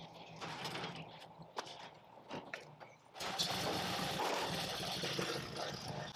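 Metal clattering and knocking as lawn equipment is unloaded from a pickup's trailer rack and ramp. About three seconds in, a steady small-engine noise starts abruptly and runs on loudly.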